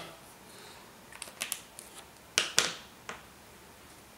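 Small plastic clicks and taps from a pen and a disposable tattoo tip being handled on a tabletop: a few light ticks just after a second in, two sharper clicks around the middle, and one more soon after.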